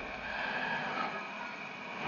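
Steady background noise with a faint high tone running through it.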